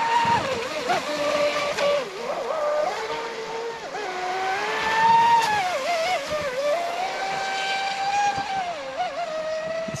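Traxxas Spartan RC boat's Leopard brushless motor and prop whining at speed. The pitch rises and falls with the throttle as the boat runs laps, highest and loudest about five seconds in.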